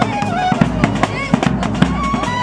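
Wedding band music: a wind melody with bending, gliding notes over drums, with many sharp drum or cymbal hits.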